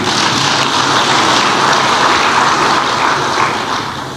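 Audience applauding: a steady wash of clapping that fades away near the end.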